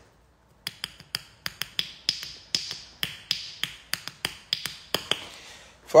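A quick, slightly uneven run of sharp clicks or taps, about three to four a second, each with a short ringing tail, starting just under a second in and stopping about five seconds in.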